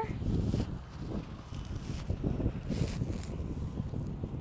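Dry cut wheat straw and stubble rustling and crackling irregularly under footsteps and a hand reaching into the swath, over a steady low rumble.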